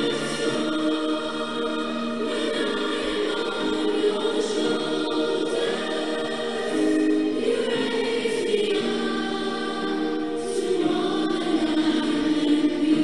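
Background music: choral singing in slow, sustained notes.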